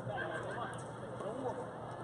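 Indistinct voices of several people talking, with no words made out, and pitch rising and falling throughout.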